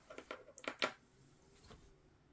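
A quick run of light clicks and small knocks over about a second, from hands handling an open test-bench PC's motherboard and wiring just after reseating a RAM stick.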